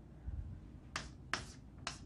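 Chalk writing on a blackboard: a low thump near the start, then three short, sharp chalk strokes from about a second in.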